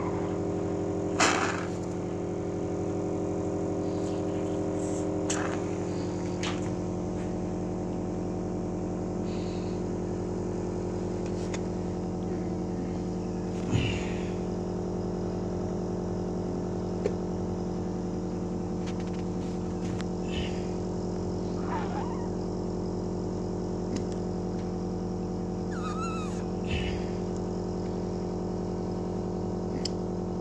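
A steady machine hum made of several steady tones, with a few brief knocks or handling noises, the loudest about a second in and about fourteen seconds in.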